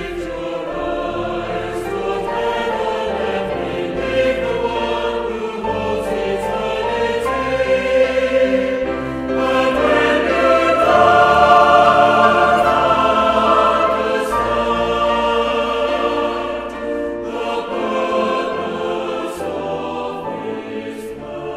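A worship song sung by a choir over held instrumental backing, swelling to its loudest passage about halfway through.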